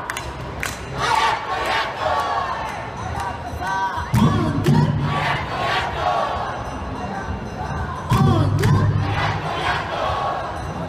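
Awa odori dancers and crowd shouting short rhythmic chanted calls, with a louder, deeper group shout about four seconds in and again about eight seconds in.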